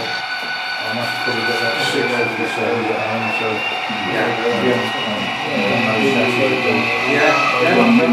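Background chatter of several people talking, with thin steady high-pitched tones above it, one of which rises slowly in pitch through the second half.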